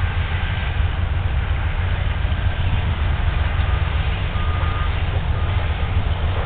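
Diesel-electric freight locomotives working hard under load, heard from a distance as a steady, heavy low rumble of their engines.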